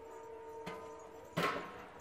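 A faint tap and then one loud, sharp knock on the blue plastic jerrycan water filter as it is handled and pumped, over a steady faint hum.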